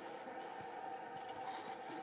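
Quiet background: a faint steady hum under a soft hiss, with no distinct sound events.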